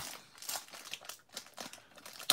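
Paper wrapper of a 1991 Score baseball card pack crinkling in the hands as it is pulled open, in a few short, soft rustles.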